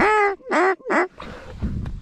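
Hand-blown waterfowl call: three loud honk-like notes in quick succession, each shorter than the one before, blown to work birds toward the decoys.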